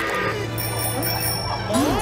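Cartoon soundtrack music with a high, steady bell-like ringing that lasts about a second and cuts off sharply. A quick rising glide follows near the end.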